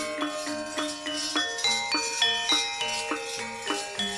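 Javanese gamelan playing: metal-keyed metallophones and gongs struck in a steady pulse of about three to four notes a second, each note ringing and fading into the next.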